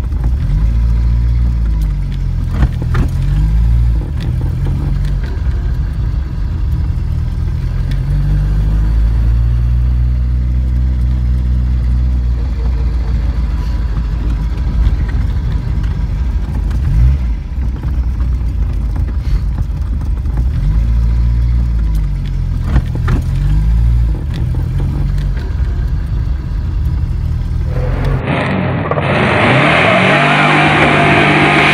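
Bond Bug three-wheeler's engine running and revving as the car is driven hard, its pitch rising and falling several times. Near the end the sound changes abruptly to a brighter, hissier and louder engine sound.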